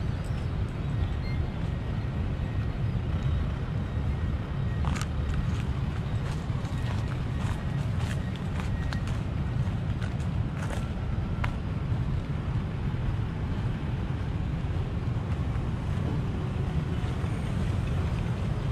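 Steady low outdoor rumble with no clear single source, with a few faint clicks and short high tones around the middle.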